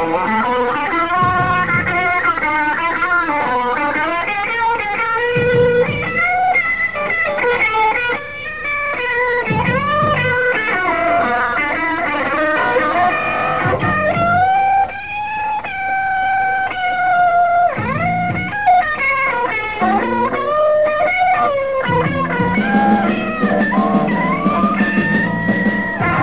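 Live rock music, an instrumental stretch with an electric guitar lead playing bent, wavering notes, including one long held note about halfway through.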